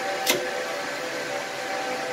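Steady whir of server and storage-array cooling fans with a faint steady whine, and a single sharp click near the start as a drive-bay carrier is pressed into the front of the array.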